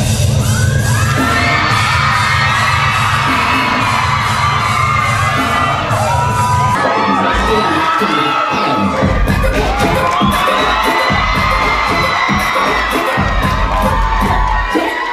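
A crowd cheering and shouting over loud dance music. A heavy, sustained bass underlies the first half, giving way about seven seconds in to a pulsing beat.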